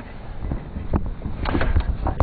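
Wind buffeting the microphone as a steady low rumble, with two short clicks about a second and a second and a half in.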